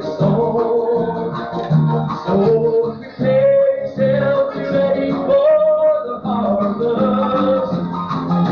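A live gospel-style song played on acoustic guitar with a sung melody, heard from an old cassette tape recording with a dull top end.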